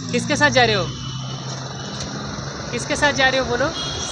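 Voices speaking briefly, once near the start and again around three seconds in, over a steady low hum of street traffic.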